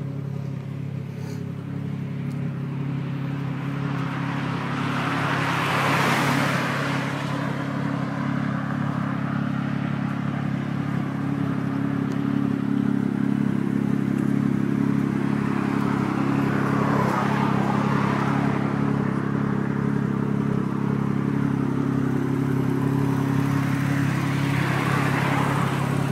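Toyota 1JZ-GTE turbocharged 2.5-litre straight-six idling steadily in a Mark II, its note holding one pitch throughout. A rushing noise swells and fades three times over the idle.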